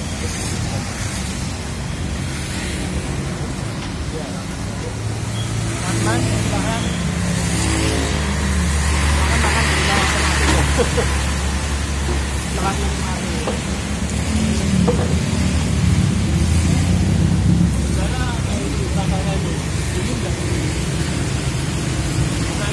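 Steady rushing background noise with a low rumble under it, and indistinct voices now and then.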